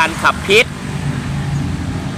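A man's voice speaking Thai for about half a second, then a steady low motor hum that also runs under the speech.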